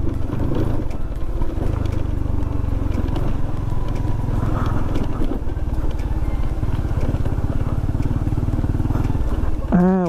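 Honda Winner X 150 motorcycle being ridden, its single-cylinder engine running steadily under a heavy low rumble of wind on the camera microphone.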